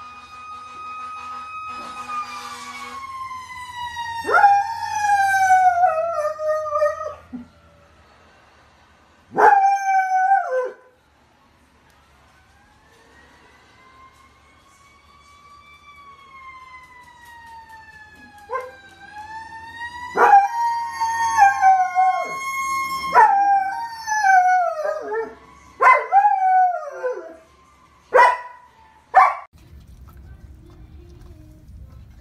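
A dog howling in long, wavering notes: one long falling howl at the start, another short one, and then a run of shorter howls in the second half. In the middle a fainter, smooth rising-and-falling wail, like a distant siren, is heard between the howls.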